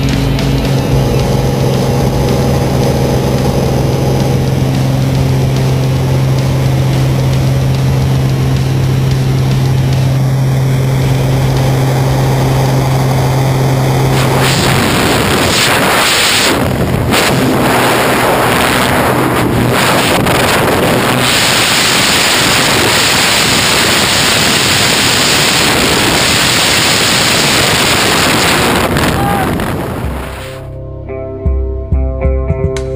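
Single-engine high-wing plane's piston engine droning steadily, heard from the cabin. About halfway through it gives way abruptly to loud, gusty rushing wind on the microphone as the door opens and the tandem pair exit into freefall.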